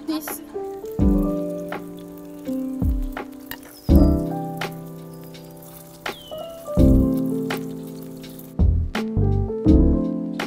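Background music: held chords, each struck and left to fade, with a new chord every two to three seconds.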